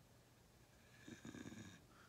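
Near silence with one brief, faint nasal breath about a second in.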